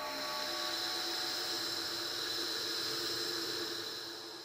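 Steady electronic hiss-like noise drone with a faint low hum, no beat, the closing tail of an industrial rhythmic-noise track; it begins to fade right at the end.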